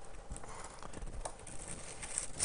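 Quiet rustling of Bible pages being turned and handled, with a few faint soft clicks, while a passage is looked up.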